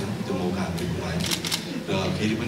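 A man talking into a handheld microphone, with a quick run of several camera shutter clicks about a second in.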